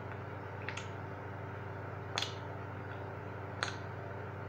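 A person's mouth making exaggerated chewing movements in imitation of a camel: three short wet lip smacks about a second and a half apart, over a steady low hum.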